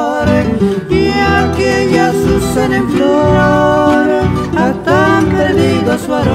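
Cuyo tonada played on acoustic guitars with a guitarrón bass, chords strummed in a steady rhythm under a picked melody.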